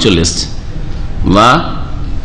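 A man lecturing in Bengali into a microphone: a short burst of speech at the start and another about halfway through, with a pause between.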